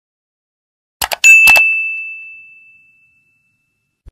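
End-screen subscribe-reminder sound effect: a few quick clicks, then a single high bell ding that rings out and fades over about two seconds.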